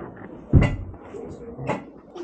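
A heavy thump about half a second in, followed by a lighter knock near the end.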